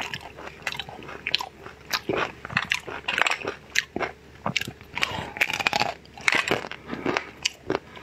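Biting and chewing into a chocolate-coated mango pop ('crispy-skin mango'), the hard chocolate-and-nut shell cracking in many quick, irregular crunches.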